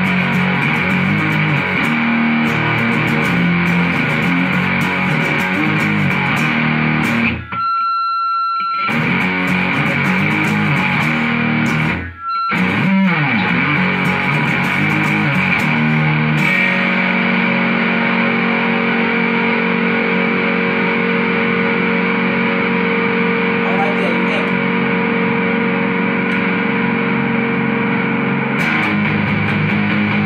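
Electric guitar played with distortion through a Mesa/Boogie combo amp: riffing, broken by two brief pauses about seven and twelve seconds in, then long held chords ringing out for about twelve seconds before the riffing starts again near the end.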